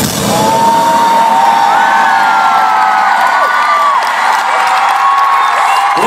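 A large arena concert crowd cheering and screaming as the band's electronic music cuts off in the first second. Many long, high-pitched screams rise and fall over the cheering.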